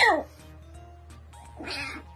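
Kitten yowling into its water bowl with its head down inside it. One loud call with a falling pitch comes at the start, and a second, rougher and quieter call comes near the end, over faint background music.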